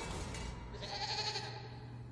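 A goat bleating once, for about a second, starting just under a second in.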